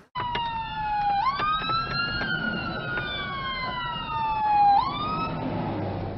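Fire engine siren wailing, heard from inside a car: the pitch falls slowly and then sweeps quickly back up, twice.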